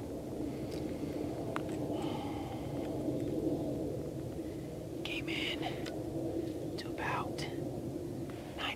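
A man whispering a few short phrases, over a steady low background noise.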